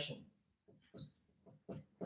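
Dry-erase marker writing on a whiteboard: faint scratchy strokes, then from about halfway in a few short, high-pitched squeaks as the tip drags across the board.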